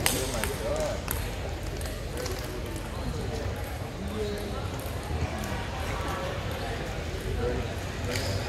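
Table tennis balls clicking off bats and tables, sharp clicks at irregular intervals, over a background of people talking.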